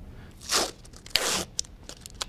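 Scalpel packaging torn open: two short tearing sounds, about half a second and just over a second in, followed by a few light clicks.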